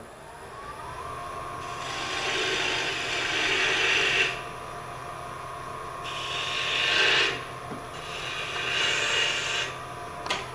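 Bowl gouge cutting a small wooden cylinder spinning on a wood lathe, in three passes of one to two and a half seconds, each a rising scraping hiss of shavings coming off. A steady hum from the lathe runs under the passes. The cuts rough the cylinder down toward its final diameter, with close to a quarter inch still to remove.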